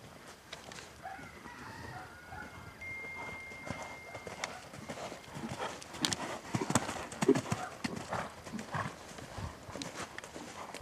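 Hoofbeats of a ridden horse cantering on a soft arena surface, louder and sharper from about six seconds in as it passes close.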